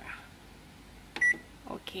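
A convection microwave oven's keypad beeping once as a button is pressed: one short, high beep about a second in, the press registering while a cooking program is being set.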